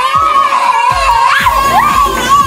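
A child's long, loud shout held on one high, wavering pitch, with background music underneath.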